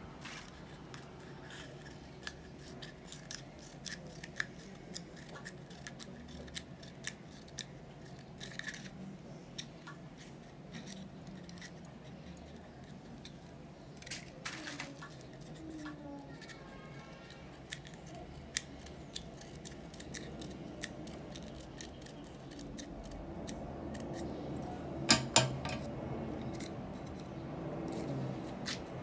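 Steel scissors snipping into the base of small starch-stiffened paper cones, notching them so they can be glued on: a scattered run of small cutting clicks, with two louder snips near the end.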